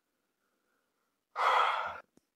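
A person's short audible breath, like a sigh, about a second and a half in, lasting about half a second, after a pause of near silence.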